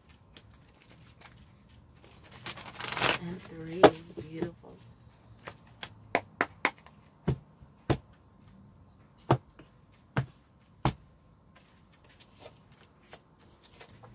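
A deck of cards being handled: a short rustling shuffle a couple of seconds in, then about a dozen separate sharp clicks and taps as cards are pulled from the deck and set down on the table.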